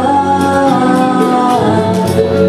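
A girl singing into a handheld microphone through a PA, holding one long note that drops in pitch about one and a half seconds in.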